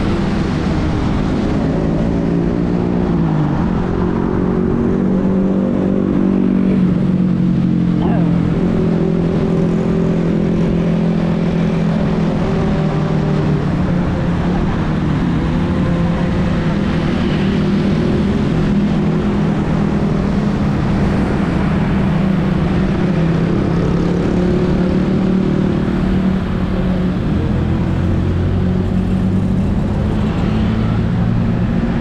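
Motorcycle engine running at road speed, heard from the rider's seat with wind rumble on the microphone; its pitch drops a couple of times in the first eight seconds as the throttle eases, then holds steady.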